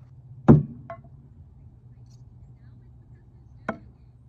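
Thrown stainless steel throwing knives striking a target of wooden logs and a plastic toy car: a loud sharp knock about half a second in, followed by a small click, and a weaker knock near the end.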